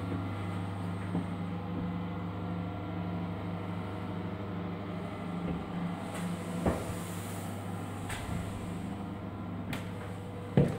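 A steady low mechanical hum, with a few light knocks near the end.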